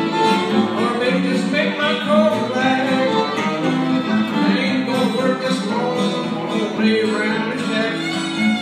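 Fiddle and acoustic guitar playing an old-time ragtime tune together: a bowed fiddle melody over steady strummed guitar chords.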